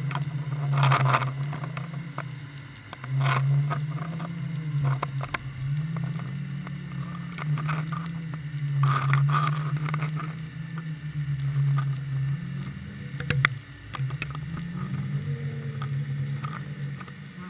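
Muffled underwater sound picked up by a GoPro sealed in its housing on a deep-drop rig: a low hum that wavers slowly, with scattered clicks and knocks and one sharp knock near the end.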